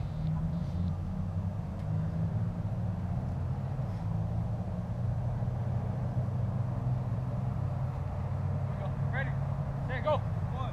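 Steady low outdoor rumble on the microphone, with distant voices calling out about nine seconds in.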